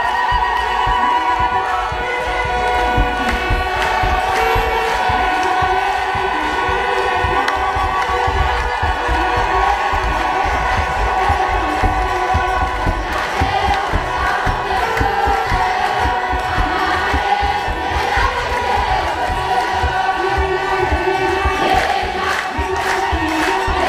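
A large crowd singing an Ethiopian Orthodox hymn (mezmur) together over a beating kebero drum, in one steady, loud wash of voices.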